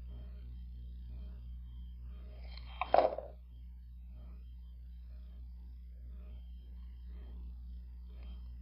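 Wooden stir stick scraping the last mixed urethane resin out of a clear plastic cup, faint scratchy strokes over a steady low electrical hum. About three seconds in there is a brief, loud clatter of a few sharp knocks.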